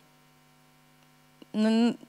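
Faint steady electrical hum from a microphone and sound system during a pause in speech; a woman's voice resumes about one and a half seconds in.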